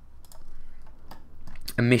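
Computer keyboard typing: a run of light, irregular clicks.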